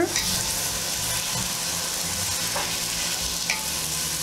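Ground beef, corn and black beans sizzling steadily in a hot pot while a wooden spoon stirs them through.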